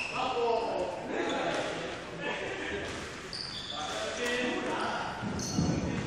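Badminton footwork on an indoor court: sports shoes squeak in short high chirps a few times and land with a heavy thud near the end. Voices talk in the background of the large echoing hall.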